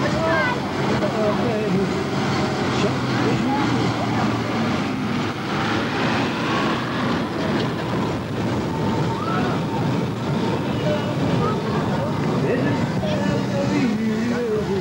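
A small amusement-park train running past with a steady low engine hum, amid a crowd's voices.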